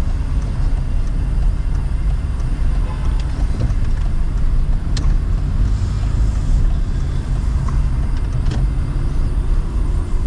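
Steady low rumble of a car's engine and tyres heard from inside the cabin while driving through city streets, with a couple of faint clicks.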